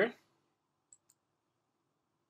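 Two faint, very short clicks about a second in, a fifth of a second apart, against near silence.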